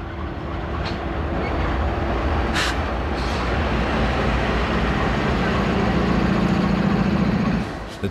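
GE Dash 8-40BW diesel-electric locomotive's V16 engine running as the unit passes close by, its low drone building steadily in loudness. A single sharp click about two and a half seconds in.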